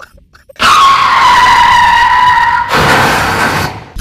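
A loud, drawn-out wail of theatrical crying, starting about half a second in and held on one pitch that sags slightly. It turns into a breathy rasp for about a second before cutting off near the end.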